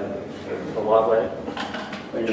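A short stretch of indistinct voice about a second in, with a few light knocks and clatter of things being handled around it.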